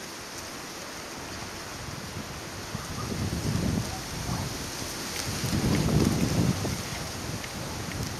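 Wind buffeting the microphone in gusts, with low rumbles swelling about three and a half and six seconds in over a steady hiss.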